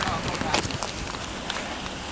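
Footsteps on wet pavement, a few sharp steps about half a second in, with faint, indistinct voices in the background.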